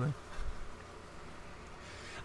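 A pause in conversation: a spoken word trails off, then only faint background noise with a steady low hum remains.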